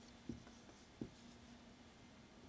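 Faint sound of a marker writing on a whiteboard, with two light ticks, about a third of a second and about a second in.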